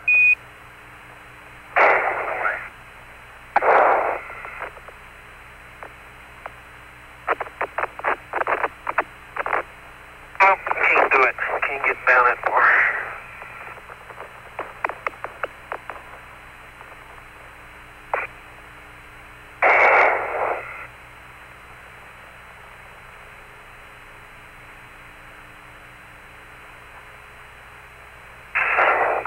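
Apollo lunar surface radio loop: a steady hiss and hum with short bursts of radio noise and runs of quick clicks. The sound is cut off in the highs like a voice channel.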